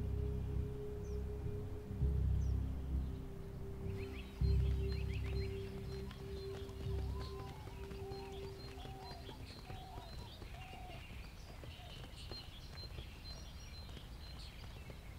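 Background music, a held note over slow, heavy low beats, fading out about ten seconds in. From about four seconds in, birds chirp in an outdoor ambience.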